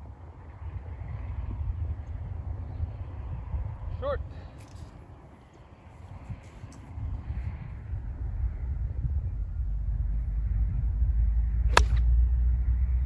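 A golf club striking a ball once, a single sharp crack near the end, over a steady low rumble of wind on the microphone that grows louder toward the end.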